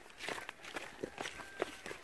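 Footsteps on dry grass and cracked, dry clay ground: a handful of faint, irregular steps.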